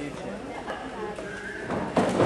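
Spectators talking and calling out in a gym hall, with one drawn-out high shout a little past halfway, then a sudden thud near the end as the two wrestlers collide in the ring.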